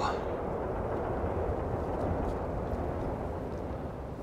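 Steady low outdoor rumble with no distinct events, easing slightly near the end.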